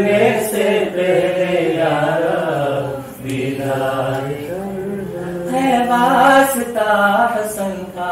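Chanted recitation of an Urdu munajat, a devotional supplication to God. One voice carries a long melodic phrase, breaks briefly about three seconds in, and sets off on the next phrase, which climbs higher a little past the middle.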